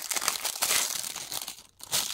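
Clear plastic packaging sleeve crinkling as hands squeeze and handle the wrapped keyboard wrist rest, with a short pause near the end.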